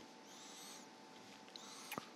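Faint room tone with a steady low hum, two faint high-pitched chirps, and a single sharp click near the end.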